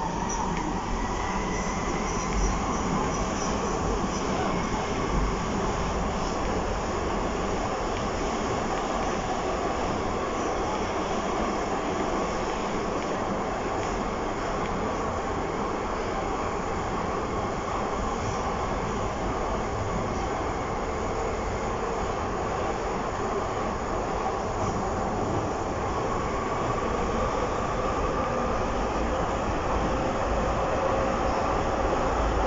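Docklands Light Railway B07 stock train running, heard from inside the car: a steady rumble and rush of the wheels on the track. A whining tone rises in pitch over the first couple of seconds and again over the last few seconds.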